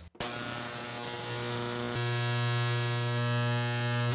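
Ultrasonic parts cleaner running, heard as a steady, nasty buzzing hum with many evenly spaced overtones as its ultrasonic vibration distorts the audio. It steps up slightly in loudness about two seconds in.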